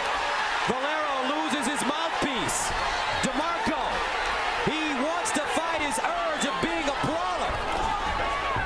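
Arena crowd at a boxing match shouting and cheering, many voices rising and falling over one another, with a few sharp smacks scattered through it.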